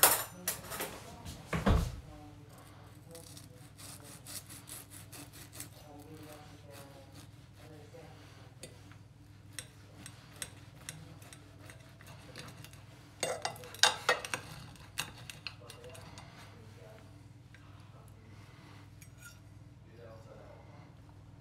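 Knife sawing through the crisp, oven-browned bacon wrap of a mozzarella bacon bomb, with the knife and fork scraping and clicking against a porcelain plate. The clinks are loudest in the first two seconds and again in a short cluster about two-thirds of the way in.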